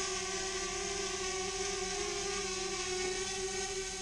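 DJI Spark quadcopter's propellers and motors in flight, a steady buzzing whine held at a few fixed pitches.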